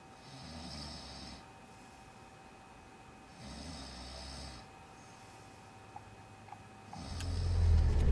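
A man snoring in his sleep: two snores about three seconds apart, each about a second long. Near the end a loud low car rumble fades in and grows.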